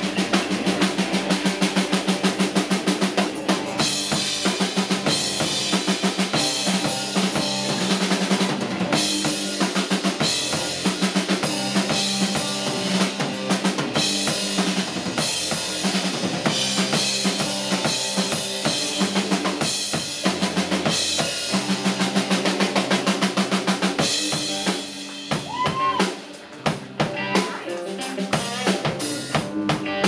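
Live drum solo on a rock drum kit: fast, dense snare hits, rimshots and bass drum. The drumming briefly drops away about twenty-five seconds in, then picks up again.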